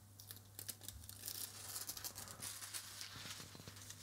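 Protective paper sheet being peeled off a laptop screen and handled, a faint dry crackling and rustling.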